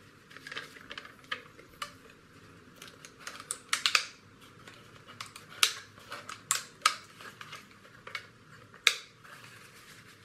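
Clear plastic bottle and snap-together plastic kit parts being handled: irregular clicks, taps and crinkles. There is a cluster of the loudest snaps about four seconds in, more through the middle and one last sharp click near the end.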